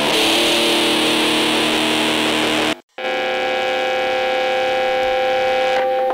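Metal music: a distorted electric guitar holds a sustained chord, breaks off into a brief silence a little before halfway, then rings out on a new held chord.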